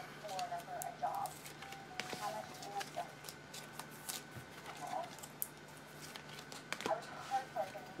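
Trading cards in rigid clear plastic holders being handled and flipped through on a table, with scattered light clicks and plastic rubbing. Faint murmured voice fragments come and go.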